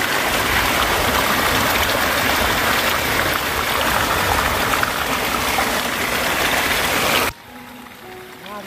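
Water gushing steadily into and through a fine mesh net. The rush cuts off suddenly near the end.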